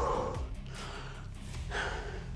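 A man breathing heavily, out of breath after a round of jumping jacks: one loud gasping breath at the start and another near the end.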